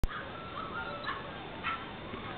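Five-week-old American Staffordshire terrier puppy whining in thin, wavering high tones through the first second, then giving two short, sharp yips.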